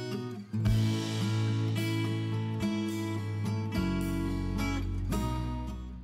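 Background music: a strummed acoustic guitar playing chords, starting strongly about half a second in and changing chord a few times.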